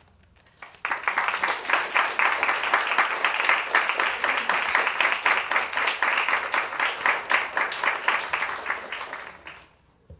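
Audience applause, many people clapping, at the close of a lecture: it starts suddenly about a second in and dies away near the end.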